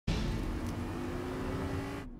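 An Audi Q5 SUV driving toward the camera: engine and tyre noise with a low rumble, the engine note rising slightly.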